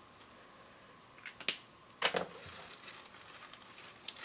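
Thin paper napkin being picked up and handled, giving two brief soft rustles about one and a half and two seconds in, over low room tone.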